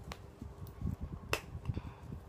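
Sharp clicks and soft knocks of small objects being handled on a table; the loudest click comes a little past halfway.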